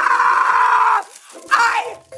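A woman screaming in frustration: one long, steady, loud scream of about a second, then a shorter cry about a second and a half in.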